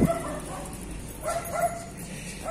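Small dog whining: a few short, high cries, two of them close together past the middle.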